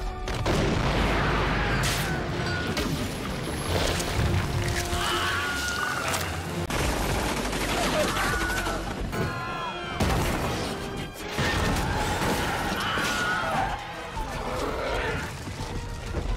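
A run of short film-soundtrack excerpts, each with the Wilhelm scream, the stock sound effect of a man's short, wavering cry. The screams come several times, over orchestral film music and battle noise with gunfire and booms.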